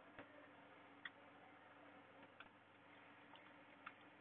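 Near silence with a few faint, sparse clicks of computer keys being typed, about five over four seconds.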